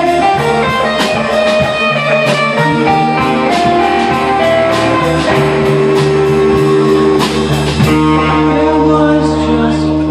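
Live band playing amplified electric guitars and bass guitar, with a steady beat of sharp hits that stops about eight seconds in while the guitars ring on.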